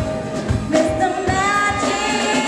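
Live soul/R&B band playing, with a woman singing lead into a microphone over a steady drum beat and electric guitar.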